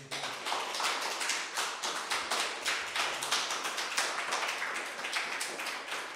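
Small audience applauding, a steady patter of many separate hand claps.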